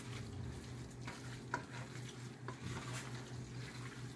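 Wooden spoon stirring thick macaroni and cheese in a cooking pot: soft, sticky scraping with a few light knocks of the spoon, over a steady low hum.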